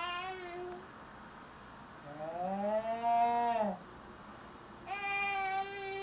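Drawn-out, pitched vocal calls, each held for a second or more: one trails off just after the start, a lower, arching one fills the middle, and a higher, steadier one begins about five seconds in.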